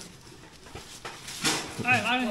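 Low room tone, then a short scuff about one and a half seconds in, and a brief wavering vocal sound from a person near the end.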